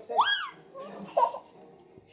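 A young child laughing: a short, high-pitched peal that rises and falls shortly after the start, then a brief second vocal sound a little past the middle.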